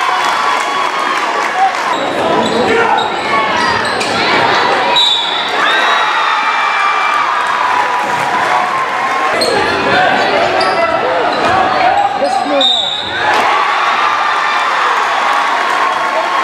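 Basketball game sound in a gymnasium: a basketball bouncing on the hardwood, short squeaks, and a continuous hubbub of crowd voices with some clapping.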